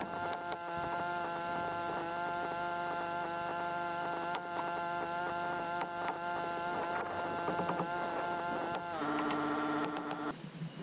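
Air compressor motor running with a steady hum. Near the end a different, lower buzz takes over for about a second.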